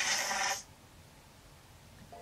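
A faint, steady hiss from the end of the playing music video's soundtrack cuts off suddenly about half a second in, leaving near silence.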